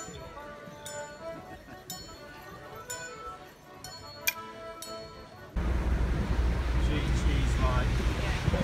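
An accordion tune played for folk dancers, with a few bright metallic strikes ringing over it. About five and a half seconds in, this cuts off abruptly to a loud, steady rumbling noise on the microphone.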